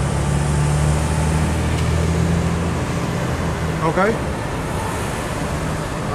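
City street traffic noise with a steady low engine hum, which drops away about four seconds in.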